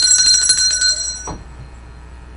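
A bright electronic ring, several high steady tones with a fast trill, cutting off a little over a second in, followed by low room hum.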